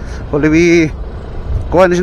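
A man's voice in two short stretches, about half a second in and again near the end. Between them and underneath runs the low, steady rumble of a scooter being ridden: engine and road noise.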